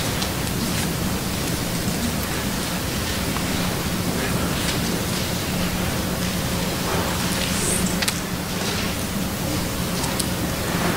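Steady hiss with a faint low hum under it, the room tone and noise floor of an auditorium recording, with a faint tick about eight seconds in.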